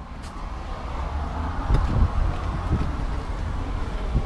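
Wind rumbling on the microphone outdoors, with road traffic going by; the sound grows louder about a second in.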